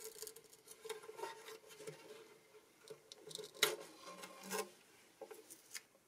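Faint rustling and light clicks of hands working inside a mandolin's soundhole, peeling off a small piece of tape, with one sharper click about three and a half seconds in.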